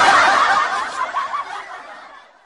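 Snickering laughter that fades away over about two seconds.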